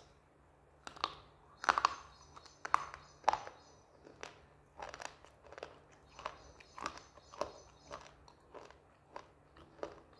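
Close-miked crunching and chewing of a brittle piece of slate, in an uneven string of sharp crunches about one to two a second. The loudest crunches come in the first few seconds.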